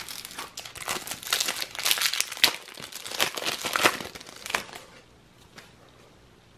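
Foil wrapper of a Panini Adrenalyn XL card pack crinkling and tearing as the pack is taken from the box and ripped open: a rapid run of crackles that dies away after about four and a half seconds.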